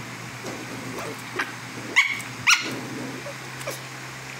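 Small dog giving two short, sharp yips about half a second apart, around two seconds in, with a few fainter yelps around them.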